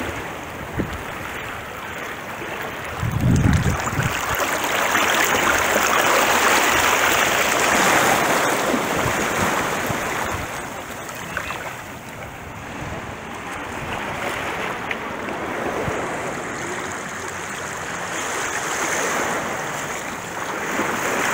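Small sea waves washing over rocks and sand at the shoreline, the wash swelling and easing. A brief low rumble about three seconds in.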